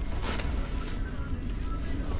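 Steady low rumble of wind noise.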